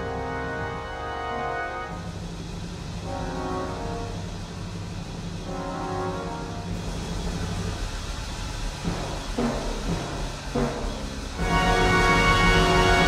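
Brass band playing slow, held chords that layer up in the Lydian mode in the quiet closing section of the piece, higher voices entering and fading over a sustained low bass. Near the end a full, louder chord swells in.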